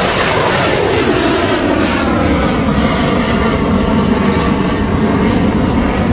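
Missile launched from a warship: the rocket motor gives a loud, steady roar with a slowly sweeping, whooshing tone.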